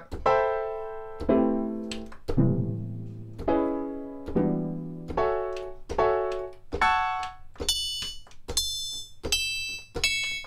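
A sampled grand piano chord played from Logic's Quick Sampler, struck about once a second at different keys: it drops lower at first, then steps steadily higher until the last chords are very high and thin. Each chord plays back at the same speed and length whatever its pitch, because Flex time-stretching is switched on.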